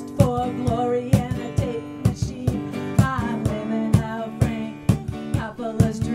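Live acoustic guitar strummed over a steady drum beat of about two strokes a second, with a voice singing the melody.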